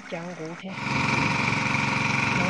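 A person's voice briefly, then, a little under a second in, a small petrol-engine water pump running steadily and louder.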